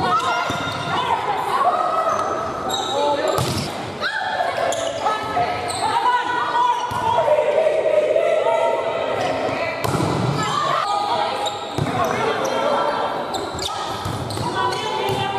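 Volleyball rally on an indoor court: the ball is struck sharply several times while players' voices call out throughout.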